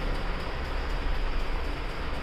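Steady, even hiss-like background noise with a low hum underneath: the room tone of an empty flat.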